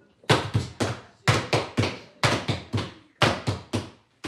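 Flat wooden laundry beaters whacking linen on a wooden table. The strokes fall in quick groups of three, four groups about a second apart, in a steady working rhythm.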